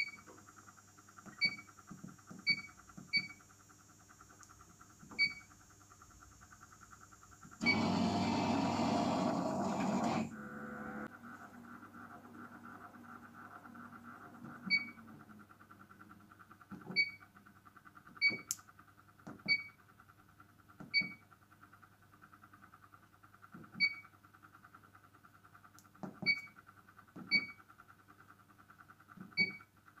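Keypad beeps from an Advanced Instruments cryoscope as its buttons are pressed: about fifteen short, high single beeps at irregular intervals over a faint steady hum. About eight seconds in there is a loud rushing noise lasting under three seconds.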